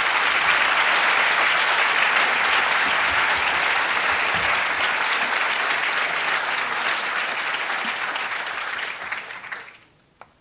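A lecture audience applauding steadily as the guest speaker is welcomed, the clapping tapering off and stopping near the end.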